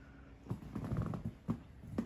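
A few soft knocks and a short scuffling rattle about a second in: pets moving and scuffling about on a bed.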